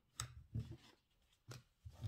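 Oracle cards being handled and drawn from a deck: a few short, soft taps and flicks with quiet gaps between.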